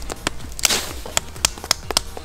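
A small piece of wet deadwood being split apart by hand: an irregular run of sharp cracks and snaps, with one longer splintering crack about a third of the way in.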